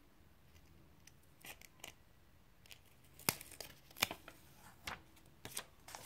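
Paper handling: orange sticky notes and dictionary pages rustling and crackling under the hands, heard as a scatter of sharp crackles and clicks. The loudest come a little past three and four seconds in.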